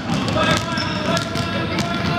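Several basketballs being dribbled at once on a hardwood gym floor, the bounces overlapping in an irregular patter.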